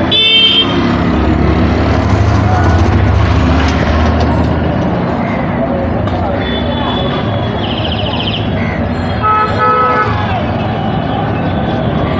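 City street traffic: an engine rumbling for the first few seconds and several short vehicle horn toots, the longest about six to eight seconds in.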